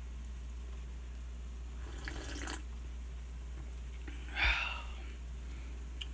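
A person sipping pine-needle tea from a mug: two short slurping sips about two and a half seconds apart, the second louder.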